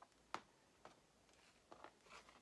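Near silence with a few faint clicks from small metal grommet parts being handled: one sharper click about a third of a second in, then a few softer ticks.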